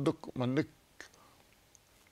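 A man's voice speaking briefly, then a pause with only quiet room tone.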